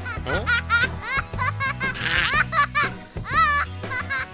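High-pitched cartoon baby voice giggling and babbling in short rising-and-falling strokes, over background music with a steady bass line.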